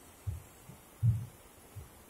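Dull low thuds in a steady walking rhythm, alternating heavy and light about every 0.7 s: a handheld phone being jolted by the steps of the person carrying it. Beneath them is a faint rush of runoff water cascading down a wall onto a flooded road.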